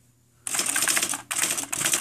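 IBM Wheelwriter 2 electronic daisy-wheel typewriter printing a fast run of characters as keys are typed. The rapid clatter starts about half a second in and comes in three runs with two brief breaks.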